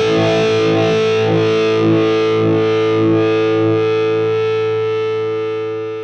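Overdriven electric guitar, a Gibson 1959 Les Paul Standard through an Ibanez TS9 Tube Screamer into a Marshall JCM800 2203 amp, playing a few notes. It then holds a final chord that rings and fades away over the last couple of seconds.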